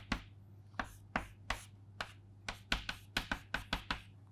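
Chalk tapping and clicking against a chalkboard while symbols are written: about a dozen sharp taps, coming more quickly in the last second and a half.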